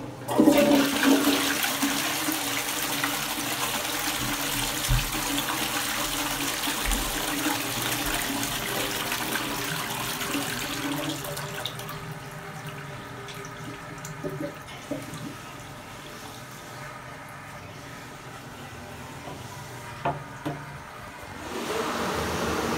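1980s Armitage Shanks Kensington low-level cistern flushing a Twyfords Classic pan. A click of the chrome lever is followed by a loud rush of water into the bowl that lasts about eleven seconds. The flow then settles to a quieter steady run of water, with a few small knocks in the last part.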